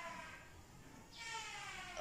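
Faint, long drawn-out cat meows: one slowly falling call, then a second one beginning a little past the middle.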